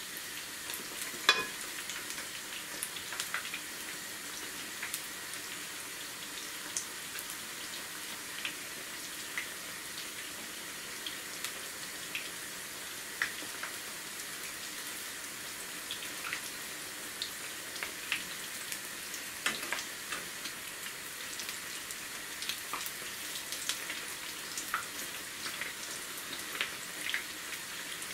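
Pakoras frying in hot oil in a non-stick pan on a low flame: a steady sizzle with scattered small pops and crackles. A few sharper clicks stand out, the loudest about a second in and again near twenty seconds.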